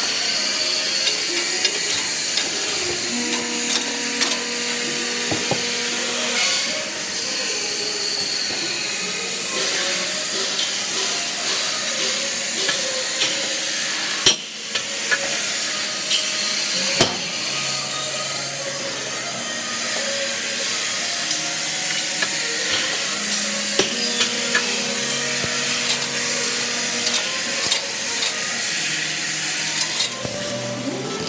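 Steel grating welding machine at work: a steady hiss with frequent sharp metallic clanks and knocks, two heavy bangs about halfway through, and some steady hum-like tones that shift in pitch.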